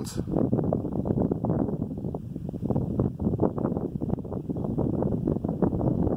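Strong wind buffeting the microphone: loud, gusty noise that rises and falls irregularly.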